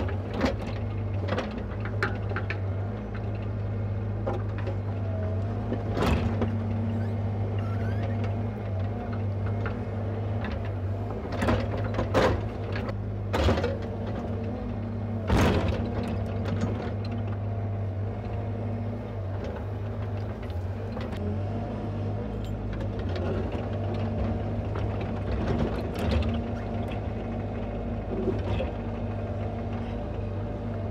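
Bobcat mini excavator's diesel engine running steadily under digging load while trenching. Several sharp knocks and scrapes come through as the bucket bites into rocky soil.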